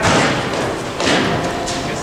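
Two thuds about a second apart, over the chatter of a busy gymnastics hall.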